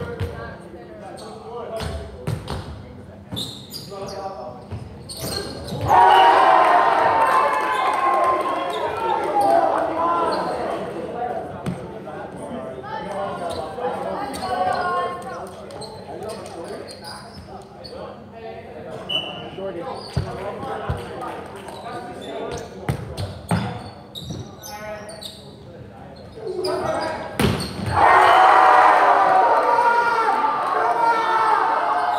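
Volleyball rally in a gym: the ball smacks sharply again and again as it is served, passed and hit, echoing in the hall. Voices shout and cheer loudly about six seconds in and again near the end, as the players celebrate a point.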